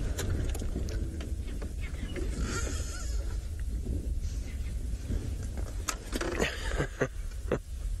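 Low steady rumble of an idling safari vehicle's engine, with a few short clicks or knocks near the end.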